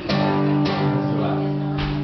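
Acoustic guitar strummed three times, each chord left to ring.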